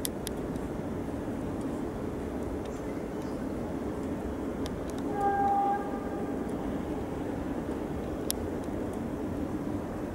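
Steady low rumble of a coupled pair of Tatra T3 trams approaching on the rails, with a short horn note of about half a second just after five seconds in and a few faint sharp clicks.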